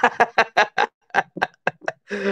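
A person laughing: a run of short, rapid ha-ha bursts, about four or five a second, that thins out and fades toward the end.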